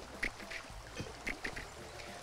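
A shallow river flowing over stones, heard as a steady rushing, with a few brief faint high chirps.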